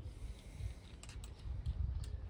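A few light clicks and taps from handling a tool and the robot mower's plastic body, over a low rumble of movement.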